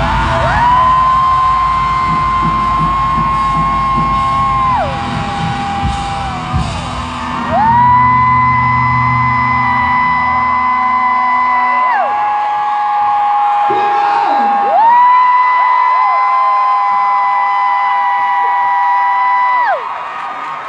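Live rock music: a singer holds three long, loud notes of about four to five seconds each, each sliding down as it ends. The drums and bass drop away about halfway through, leaving the held voice over thin backing.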